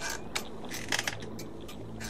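Scattered soft clicks and crackles over a faint low hum, with low sustained music tones coming in near the end.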